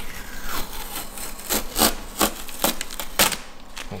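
Masking tape being peeled off a car's painted tailgate in about half a dozen short ripping pulls, tearing through the freshly sprayed Plasti Dip film around the badge.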